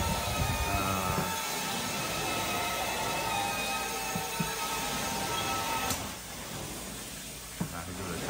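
Steady suction hiss of a VANTOOL carpet-cleaning wand drawing air and water up through its vacuum hose as it is pushed across the carpet. Background music with held notes plays over it and stops about six seconds in, leaving the hiss alone.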